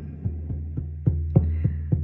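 Hand drum beaten in a steady, even rhythm of about four strokes a second over a low sustained drone, the beats getting louder about a second in.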